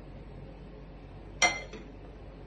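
A plate set down over a glass bowl: one sharp clink with a brief ring, about one and a half seconds in.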